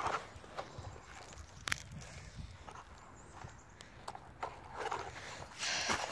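Footsteps on dry leaf litter and dirt, with knocks from handling the camera: irregular light taps and crunches, growing louder near the end.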